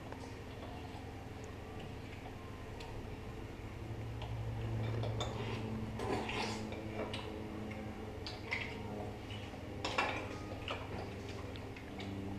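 Scattered light clinks and taps of forks and mussel shells against plates and the serving bowl as cooked mussels are picked out and eaten, with a low hum that swells in the middle.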